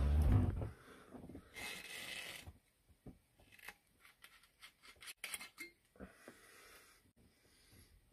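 Rubbing handling noise close to the microphone, then the screw cap of a glass Jägermeister bottle being twisted open: a short rasping rub followed by a few faint, scattered clicks.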